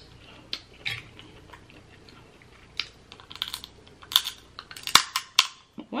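Snow crab leg shells crackling and snapping as they are broken open by hand and the meat pulled out, with chewing. A quick run of sharp cracks comes about four to five and a half seconds in.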